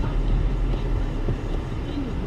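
Steady low rumble of a car idling, heard from inside the cabin.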